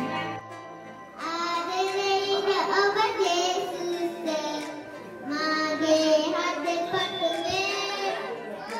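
A young girl singing into a microphone in held, drawn-out notes. She starts about a second in, and there is a brief break around five seconds between two phrases.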